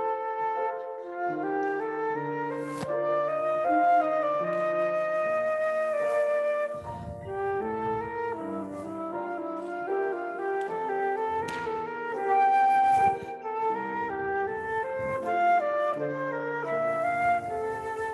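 Concert flute playing a melody over piano accompaniment.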